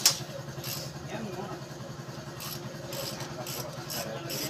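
One sharp knock right at the start, then a steady low hum of a running engine or machine, with a few faint higher taps.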